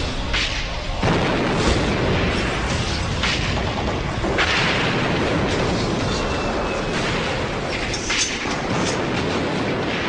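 Battle sound effect of explosions: a continuous din of booms with repeated sharp blasts throughout.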